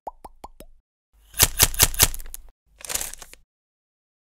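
Channel logo sting sound effect. Four quick rising blips open it, then a run of five sharp hits about a sixth of a second apart, and one short burst of noise near the end.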